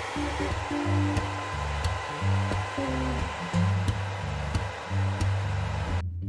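Revlon hand-held hair dryer running steadily, a constant blowing hiss with a faint motor whine, over background guitar music.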